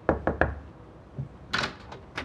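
Three quick knuckle knocks on a wooden interior door, then the door is pushed open with a short scraping sound about a second and a half in.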